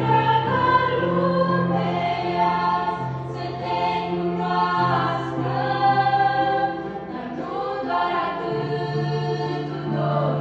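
Girls' choir singing a Romanian Christmas hymn in parts, in sustained, legato phrases.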